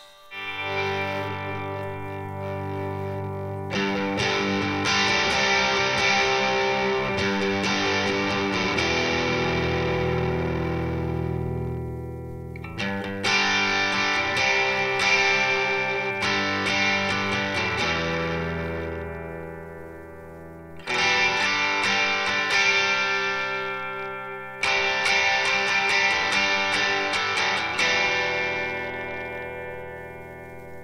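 Electric guitar (a Nash T-57 Telecaster) through a Skreddypedals Screw Driver overdrive into a Morgan RCA35 valve amp, playing overdriven chords in four passages, each left to ring and fade. The pedal's sharpness control, which works as a bass control, is being turned, so the low end comes in and out of the tone. A steady hiss from a faulty interface input sits under the guitar.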